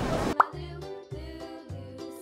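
A short rising pop sound effect about half a second in, followed by light background music with steady notes over a bass note that pulses about twice a second.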